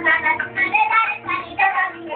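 A child singing Indian classical vocal music, the voice bending in pitch through short phrases over a steady low drone.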